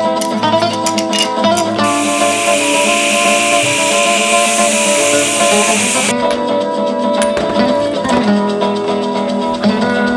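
Guitar background music throughout. An angle grinder cutting metal joins it about two seconds in, as a harsh high hiss for about four seconds, and cuts off suddenly.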